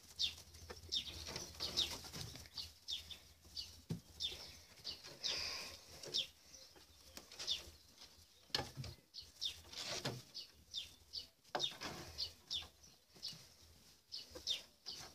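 Small birds chirping in short, high, falling chirps, several a second at times, with a few soft knocks in between.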